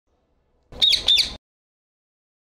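Rose-ringed parakeet giving two short, harsh calls in quick succession, each a quick falling note, followed by an abrupt cut-off.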